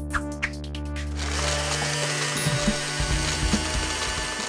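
Cartoon blender sound effect over intro music: a rapid run of ratcheting clicks for about the first second, then a dense, steady whirring as the blender runs.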